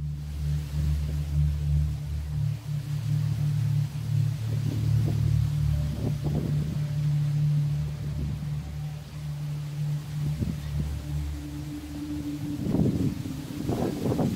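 Wind buffeting the microphone in uneven gusts, with leaves rustling, over a low sustained musical drone; the gusts grow stronger near the end.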